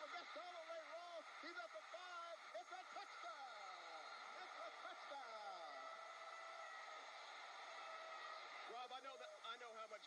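Faint, indistinct speech.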